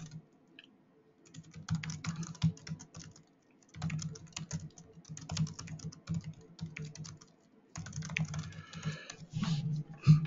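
Typing on a computer keyboard: quick runs of keystrokes, with a near-silent pause of about a second at the start and short breaks between runs.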